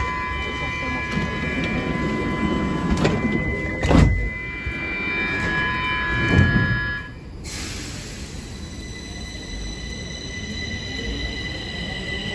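Stockholm metro train at the platform with a steady electrical hum of several tones, and two heavy thumps about four and six seconds in. About seven seconds in the sound changes to a higher whine as the train pulls out.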